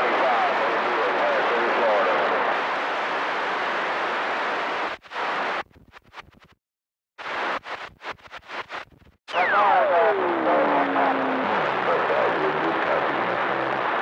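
CB radio receiver on channel 28 picking up skip, giving a steady rush of static. About five seconds in, the signal breaks up and the squelch keeps cutting it off, with stretches of silence. Near the end the static comes back with a whistle sliding down from high to low pitch and then holding steady.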